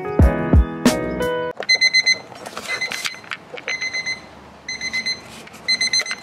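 Digital desk clock's alarm going off at six o'clock: quick, high electronic beeps in short groups with gaps, starting about a second and a half in.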